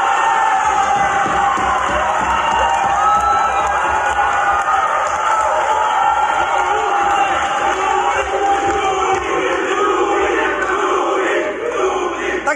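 Large crowd shouting and cheering loudly, many voices overlapping without a break.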